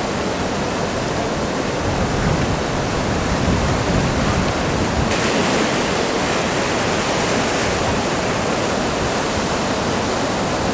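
Ocean surf breaking and washing, a steady dense hiss with no single crashes standing out; the higher hiss grows a little stronger about halfway through.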